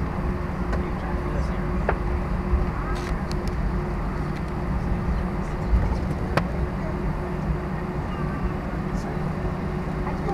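Cabin noise inside an Airbus A320 rolling out on the runway after landing: a steady low rumble from the engines and wheels with a constant hum, and a few short sharp knocks or rattles.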